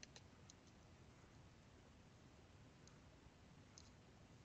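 Near silence broken by a few faint clicks of a stylus tapping a drawing tablet as short dashes and marks are drawn: several in the first half-second, one near three seconds and a quick pair near the end.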